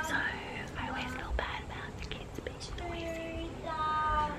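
A woman whispering close to the microphone, with children's high-pitched calls in the background, once at the start and again near the end.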